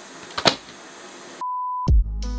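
A steady electronic beep, one clean pure tone about half a second long, just past the middle. Before it there is a sharp click over a hiss of background noise, and near the end a deep thud as music starts.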